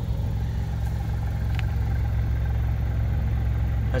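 A 2020 Toyota Camry XSE's 2.5-litre four-cylinder engine idling steadily, heard from behind the car near the exhaust tips.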